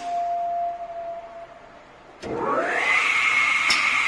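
Pneumatic cut-off saw's blade motor switching on about two seconds in with a click, its whine rising quickly in pitch and then running steady at speed. A faint steady tone is heard before it.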